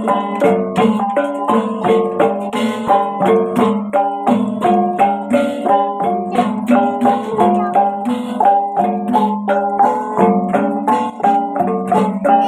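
Small handheld gongs of several pitches struck in a fast, even interlocking rhythm, ringing out a repeating melody over a steady low note.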